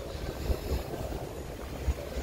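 Wind buffeting a phone's microphone on a moving bicycle, an uneven low rumble over a steady haze of street noise.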